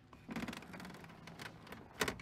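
A pleather chair creaking softly as someone shifts in it: a run of fine crackling clicks that starts a moment in.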